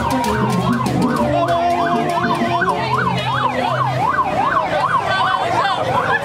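A siren yelping, its pitch sweeping rapidly up and down about three times a second, over crowd noise and music.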